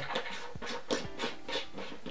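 Tailcap of a Convoy M2 flashlight being screwed onto its battery tube. The threads give a quick run of about six short, scratchy rasps, a little under a second long, as the cap is twisted on.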